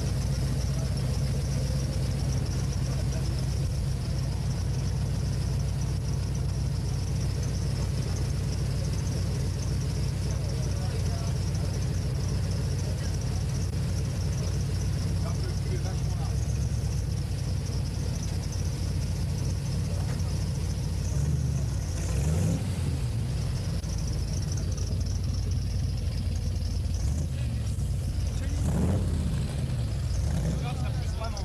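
ERA AC Cobra replica's V8 engine running steadily with the car under way. The revs climb briefly about two-thirds of the way through and again near the end.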